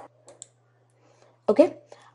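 A few light, short clicks, one at the start and two close together about half a second in, over a steady low hum.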